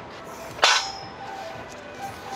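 A single sharp crack about half a second in, with a short high ringing that fades within half a second, over faint background noise.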